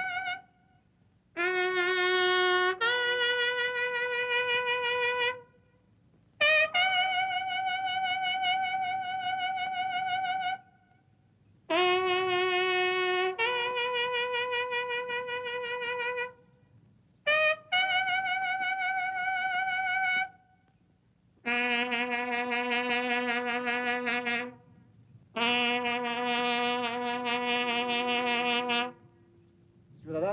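A military bugle plays a slow call in six phrases of long held notes, each separated by a short pause. The last two phrases end on long lower notes with a wavering vibrato. It is a funeral call sounded as honours for fallen soldiers.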